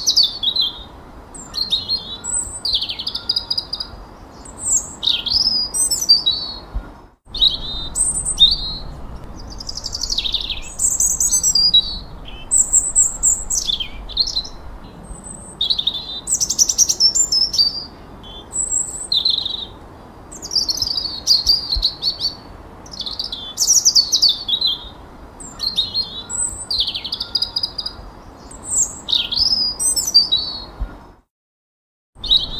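Songbirds singing: short whistled and chirped phrases, many sweeping down in pitch, following one another every second or so. There is a momentary dropout about seven seconds in.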